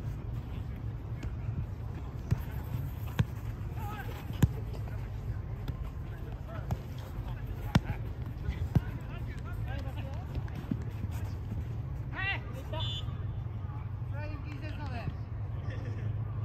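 A football kicked on artificial turf during play: four sharp thuds spread across the first half, the loudest sounds here. Players shout near the end, over a steady low background rumble.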